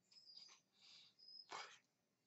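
Near silence with faint swishing rustles from hands and arms moving while signing, and one soft click about a second and a half in.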